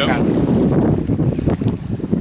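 Wind buffeting the microphone, a steady low rumble.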